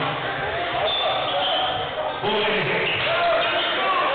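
Basketball bouncing on a hardwood gym floor, amid a steady mix of voices from players and spectators.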